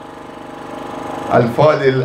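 A faint, steady hum with a slight swell, then a man's voice through a microphone and loudspeaker starts in chanting about one and a half seconds in.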